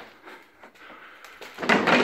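Faint rustling and handling noise, then about one and a half seconds in a sudden loud scraping, rattling noise that carries on past the end.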